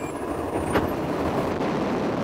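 Passenger train in motion, its steady running noise heard from inside the carriage, with a single short knock a little under a second in.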